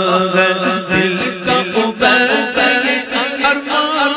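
A male voice singing a naat (Urdu devotional poem) unaccompanied, in long ornamented melodic phrases with wavering turns. A steady held vocal drone sits beneath the melody in the first second.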